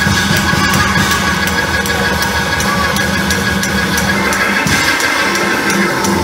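Church praise music: a drum kit keeps a quick, steady beat over sustained keyboard chords and bass.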